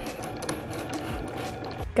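Cricut Maker 3 cutting machine running steadily, its motors driving the blade carriage and feed rollers as it cuts cardstock.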